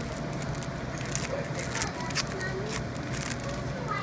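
Crinkling and crackling of a baseball card pack's wrapper being torn open by hand, many small sharp crackles over a steady low hum.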